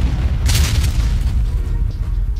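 Cinematic boom sound effect: a deep rumble with a sharp crash about half a second in that fades away, like a wall breaking. Music notes come in near the end.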